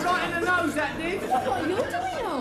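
People talking, voices overlapping in chatter.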